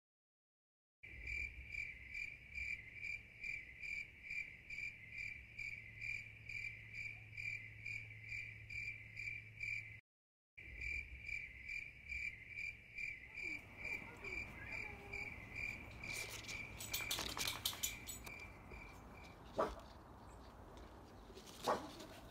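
A cricket chirping at an even pace, about two high chirps a second, after a second of silence. It breaks off briefly about ten seconds in, then resumes and fades away near the end. Rustling and a few sharp clicks come in during the second half.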